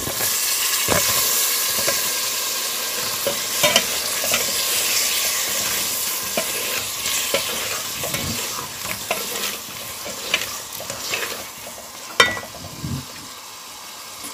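Freshly added raw potato cubes sizzling in hot oil and masala in a metal pot, stirred with a plastic spoon that scrapes and knocks against the pot. The sizzle is loudest at first, as the potatoes hit the oil, and dies down gradually, with one sharp knock near the end.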